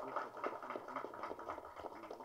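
A pause in the speech: faint hall noise with many small, scattered clicks and a low murmur.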